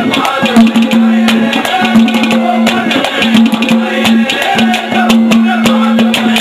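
Live Haryanvi ragni folk accompaniment with no words: a steady held drone note and a melody line over fast, busy hand-drum strokes with sharp clicks.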